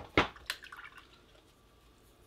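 Watercolour brush dipped and knocked in a water pot: a sharp knock, a second one a moment later, then a few small watery clicks within the first second.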